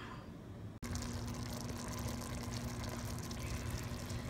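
Shrimp cooking in butter in a stainless steel pot: a steady bubbling sizzle that starts abruptly about a second in, with a faint steady low hum under it.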